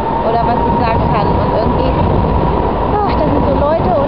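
Busy outdoor street ambience: a steady low rumble with people's voices chattering close by and a thin steady high tone running underneath.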